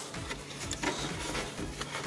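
Faint rubbing and a few light clicks from a rubber serpentine belt being worked by hand off the engine's pulleys.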